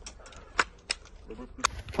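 A few sharp metallic clicks of handguns and rifles being loaded by a line of police officers, two of them about a third of a second apart.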